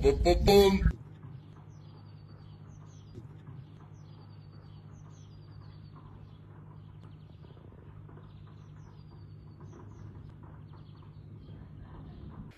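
Faint, short, high bird chirps recurring every second or so over a steady low hum.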